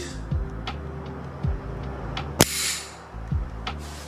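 The slide of an SCCY CPX-1 9mm pistol is released from lock-back and snaps forward into battery: one sharp metallic clack about two and a half seconds in, over background music with a soft beat.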